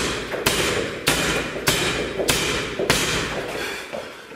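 Boxing gloves striking a spring-mounted free-standing reflex bag in an even rhythm, about six hits a little more than half a second apart.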